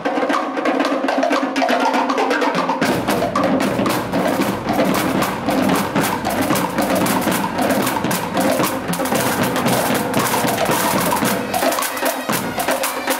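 Scout marching drum corps playing snare drums in a rapid, steady rhythm; lower drums join in about three seconds in.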